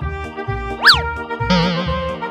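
Upbeat children's background music with a steady bass beat. About a second in, a cartoon sound effect glides quickly up and back down in pitch, followed by a wavering, warbling tone.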